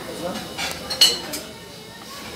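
Metal serving spoon and stainless-steel chafing dish clinking: one sharp, ringing clink about a second in, with a few lighter clinks around it.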